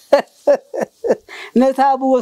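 A man laughing in four short bursts, about three a second, then breaking into speech near the end.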